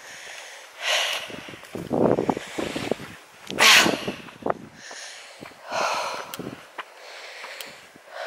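A walker's breathing close to the microphone, with a loud breath about every two to three seconds, the loudest a little before the middle. Footsteps scuff along a dirt path between the breaths.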